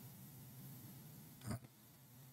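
Near silence: quiet room tone in a pause in speech, broken once by a short faint sound about one and a half seconds in.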